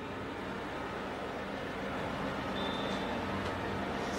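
Steady hum of distant road traffic picked up by an outdoor microphone, with no distinct vehicle standing out and the level slowly rising a little.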